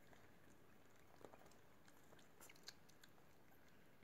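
Faint wet clicks and smacks of a two-week-old Chihuahua puppy suckling baby food from a syringe, a few soft ticks against near silence.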